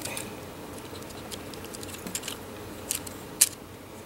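Small plastic clicks and rubbing as fingers work at a stiff snap-in foot piece on a B-Daman Crossfire Strike Cobra toy, trying to pull it out; a sharper click comes a little over three seconds in.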